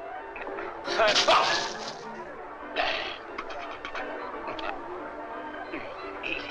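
Old comedy film soundtrack: a loud, harsh noisy burst about a second in, a shorter one near three seconds, then a quick run of sharp clicks or knocks, over background music.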